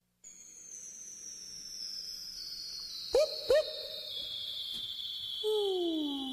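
Sound effects at the head of a track: a high whistling tone gliding slowly downward throughout, two short hoot-like calls about three seconds in, and a lower tone starting to slide down near the end.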